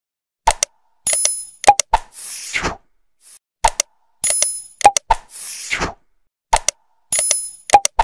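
Subscribe-button animation sound effect repeating about every three seconds: sharp mouse-like clicks, a bright bell-like ding, more clicks and a whoosh.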